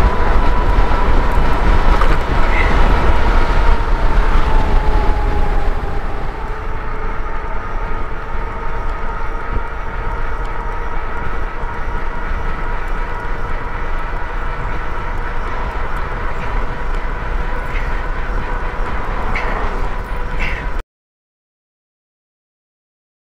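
Wind rushing over the microphone and knobby fat tires on pavement at about 40 mph, with the steady whine of a Bafang Ultra Max 1000 W mid-drive motor at full power. The wind is loudest in the first few seconds, and the sound cuts off abruptly near the end.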